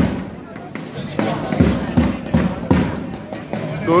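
A large drum beaten in a steady rhythm, deep beats about two or three times a second, with one hard hit at the very start.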